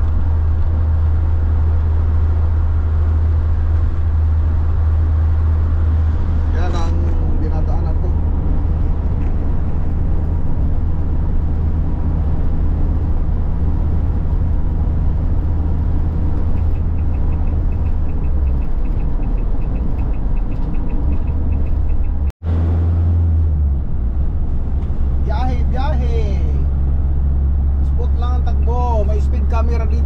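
Steady low drone of a Renault delivery van's engine and road noise, heard from inside the cab while it drives at highway speed.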